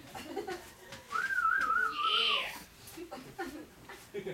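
A person whistling a short wavering phrase for about a second and a half, starting about a second in, with faint voices around it.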